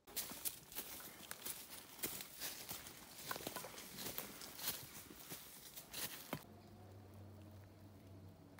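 Footsteps crunching through dry fallen leaves and twigs on a forest path, with many sharp crackles. They stop abruptly about six seconds in, and a faint steady low hum remains.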